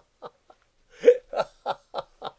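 A man laughing heartily in short, even "ha" pulses about three a second, broken by a brief pause about half a second in and picking up again with the loudest burst about a second in.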